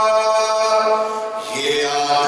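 A man's voice chanting a devotional Urdu poem at a microphone. He holds one long steady note, breaks off about one and a half seconds in, then moves onto a new note.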